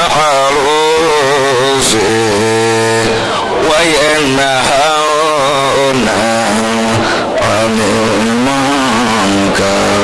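A man's voice singing a melodic chant, with long held notes that waver and slide between phrases.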